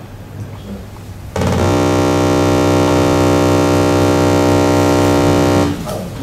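A loud, steady electronic buzzing tone, one low note with many overtones, from the Ferranti Pegasus simulator. It starts abruptly about a second and a half in and cuts off just before the end, as the factorisation of 737 finishes.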